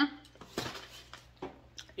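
Someone handling and eating a crispy fried birria taco: a short crackly rustle about half a second in, then a few faint clicks.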